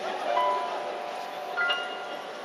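Piano playing a few soft, sustained high notes, with a new, higher note ringing out near the end.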